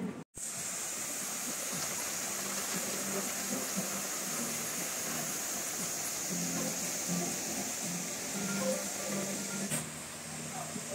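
Water curtain running down a stone wall into a pool: a steady, even rush of falling water after a brief cut-out at the very start.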